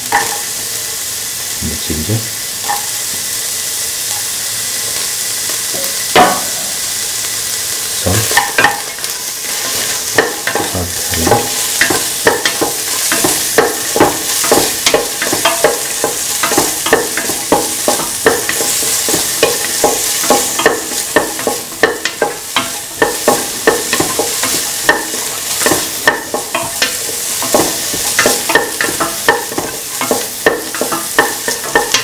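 Chopped onion pieces sizzling in hot oil in a pan, a steady frying hiss. From about eight seconds in they are stirred, with a utensil scraping and tapping against the pan several times a second.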